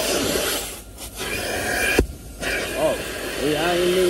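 Car wash vacuum hose sucking at the car's seat upholstery, a steady rushing hiss that dips twice, with a sharp knock of the nozzle about two seconds in.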